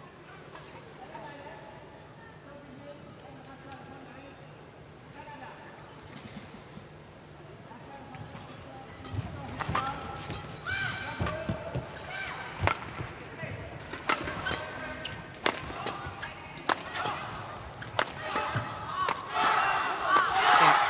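Indoor arena murmur between points. Then, from about nine seconds in, a badminton rally: sharp cracks of a shuttlecock struck by racket strings roughly once a second, over crowd noise that grows louder.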